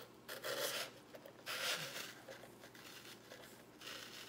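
Artificial greenery stems rustling and scraping as they are worked into dry floral foam, with two louder scrapes in the first two seconds and softer handling after.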